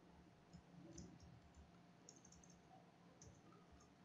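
Faint computer keyboard clicks as text is typed, in short irregular runs with a cluster about two seconds in.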